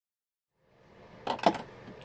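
Brief dead silence, then faint room tone with two short clicks about a second and a half in: small makeup items being picked up and handled on a table.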